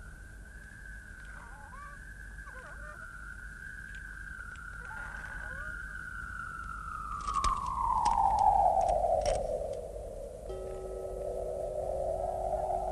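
Soundtrack of an animated film: a single thin, eerie tone that wavers, then slides slowly down in pitch past the middle and levels off low. A few faint clicks fall as it drops, and steady lower tones join it near the end.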